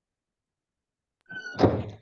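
Silence, then about a second and a half in a single short thump, with a brief thin tone just before it.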